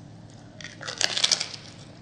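Crunching bites into a crisp homemade fried corn tortilla chip (totopo): a burst of sharp cracks and crackles about half a second in, loudest around one second, dying away as the chewing goes on.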